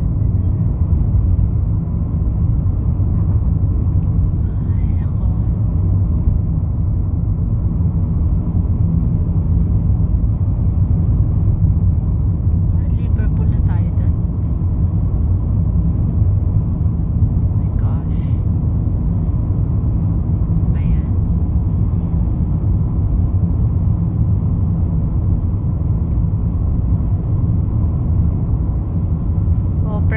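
Steady low rumble of a car's engine and tyres at road speed, heard from inside the cabin while driving.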